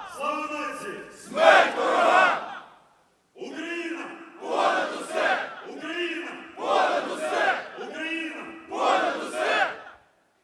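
Call-and-response chant: one man shouts a slogan in Ukrainian and a large group of men answers in a loud unison shout, four times over.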